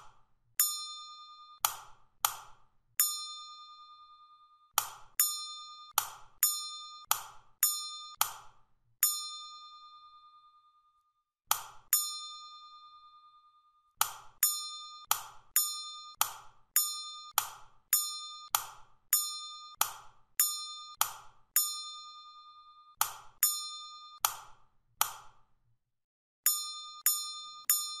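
A short electronic ding, each one a bright ringing tone that fades quickly. It repeats about forty times at an uneven pace, sometimes two or three a second, with a few short pauses, one ding for each key press that steps the simulation forward.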